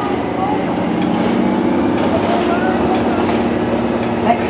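Cabin sound of a TTC CLRV streetcar under way, a steady low hum from the moving car, with passengers' voices talking in the background.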